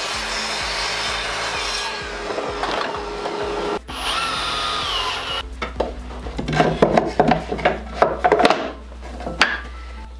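A compact sliding miter saw runs and cuts through a stained plywood panel, with a brief break partway, then stops about five and a half seconds in. After that come scattered wooden knocks and clatter as the cut plywood pieces are dropped and set into a wooden frame.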